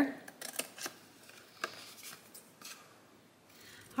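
Large scissors cutting through cardstock: a series of short, crisp snips over the first few seconds.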